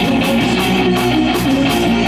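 Live rock band playing: electric guitars and bass over drums, with a steady beat of cymbal hits about three a second.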